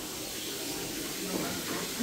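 Steady hiss of water churning in a jetted whirlpool tub.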